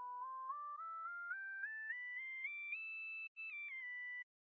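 Serum software-synth flute lead, its filter set to follow the key played, playing single notes that step up in pitch about four times a second. It climbs steadily, holds a high note with a brief break about three seconds in, then drops back down near the end. It plays quietly.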